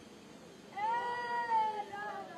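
One long, high-pitched vocal note starts about three quarters of a second in. It slides up at the start, holds for about a second and falls away near the end.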